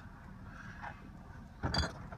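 Low steady rumble of a pickup truck's engine heard from inside the cab, with one short clink about three-quarters of the way through.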